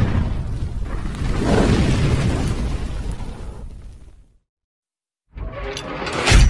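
Cinematic logo-intro sound design: a loud boom at the start, then a rushing whoosh that swells and fades out about four seconds in. After a second of silence, another sound begins near the end.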